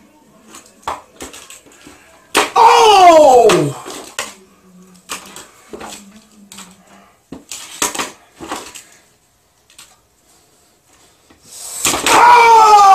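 Small hard plastic clicks and knocks as toy wrestling figures and a miniature table are handled and set down in a toy ring. About two and a half seconds in, a voice gives one long wordless cry that falls steadily in pitch.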